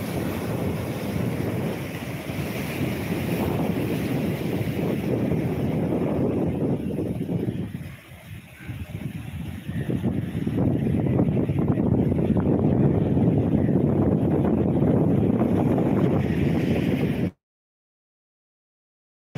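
Sea surf washing and foaming against a rocky shore, with wind buffeting the microphone. The noise dips briefly about eight seconds in and cuts out abruptly near the end.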